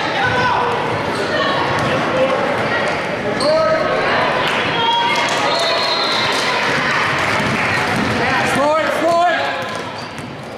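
Basketball game in a gym: a basketball bouncing on the court under steady crowd noise, with spectators shouting, echoing in a large hall. The shouting is loudest about three and a half seconds in and again near the end.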